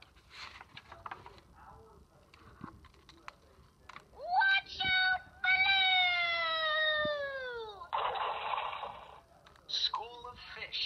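LeapFrog Tag reading pen's small speaker playing electronic sound effects: a quick rising tone and a few stepped beeps, then a long whistle-like tone gliding downward over about two seconds, then about a second of hiss. Before them there are faint clicks and rustles of the book's page being turned.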